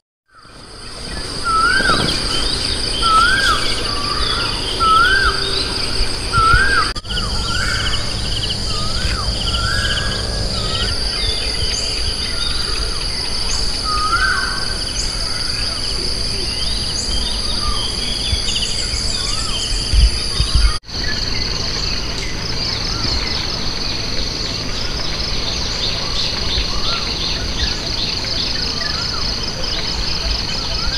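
Morning outdoor ambience of birdsong. One bird gives a repeated rising-and-falling whistled call about once a second in the first several seconds, among scattered chirps. Under it runs a steady high-pitched insect drone, and the sound breaks off briefly twice.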